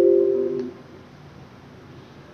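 A held electronic chime chord of a few steady tones, the tail of an intro jingle, which stops about two-thirds of a second in. After it only a faint steady hiss remains.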